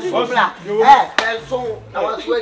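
Voices speaking in an animated exchange, broken about a second in by one sharp crack.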